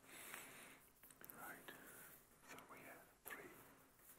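Very faint whispering or hushed talk, barely above near silence.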